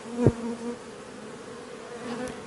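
Honey bees buzzing in a swarm around a beehive entrance during a robbing attack: a steady hum, with a brief louder swell about a quarter of a second in.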